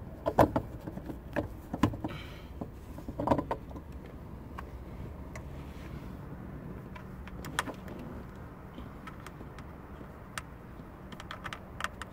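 Scattered clicks, taps and knocks of a plastic-and-metal soft-top latch being handled and pressed into place against the windshield header, thickest in the first few seconds and again near the end, over a faint steady hum.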